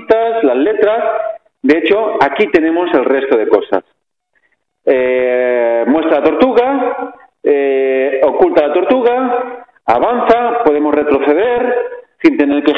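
Speech only: a voice talking in phrases, with about a second of dead silence about four seconds in.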